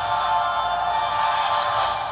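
Score music from a TV episode playing through the Maxwest Astro 6 smartphone's loudspeaker: sustained held notes with little bass.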